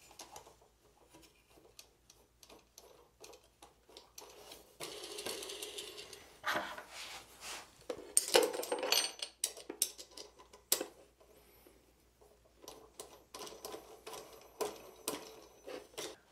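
Small metallic clicks, taps and rattles as aluminium leveling wheels and coil springs are fitted to a 3D printer's bed corners by hand, with a stretch of scraping in the middle and one sharp click about two thirds through.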